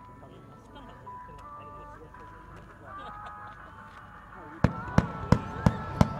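Music over loudspeakers with crowd chatter, then a fireworks starmine barrage starting to fire near the end: sharp reports evenly spaced about three a second as fans of comet shells go up.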